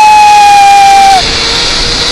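A man's long, held high-pitched yell of excitement while riding a zip line, dropping in pitch and breaking off just over a second in, over a steady hiss of rushing air on the microphone.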